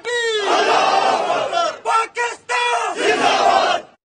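A large group of men shouting in unison in answer to one man's long call, a military slogan call-and-response: a drawn-out chorus, a short call from the single lead voice a little after halfway, then a second chorus that cuts off abruptly just before the end.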